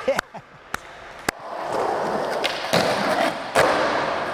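Skateboard wheels rolling on smooth concrete, with sharp clacks of the board hitting the ground. The loudest comes near the end, the pop and landing of a backside shove-it, with a few lighter clicks in the first second or so.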